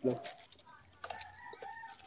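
A rooster crowing faintly in the background: one drawn-out crow starting about halfway through.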